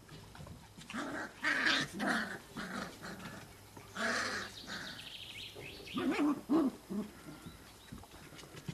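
Cocker spaniel puppies play-growling while they wrestle, in several short bursts: about a second in, around four seconds, and again about six to seven seconds in.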